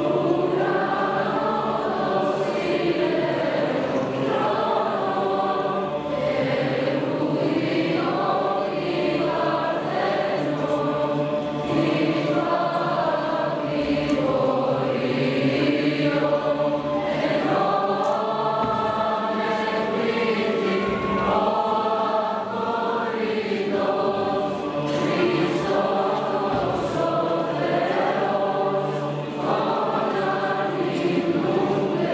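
Large mixed choir of teenage boys and girls singing a Christmas piece together, continuously.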